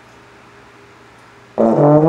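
Slide trombone coming in loudly and suddenly about one and a half seconds in, sounding its first notes with a step down in pitch. Before that, only a faint steady hum.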